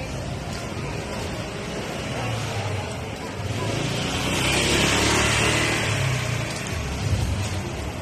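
Busy street noise with a motor vehicle passing close by. Its engine and tyre noise swell to a peak about five seconds in, then fade.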